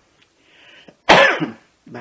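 A man clears his throat with a single loud, short cough about a second in.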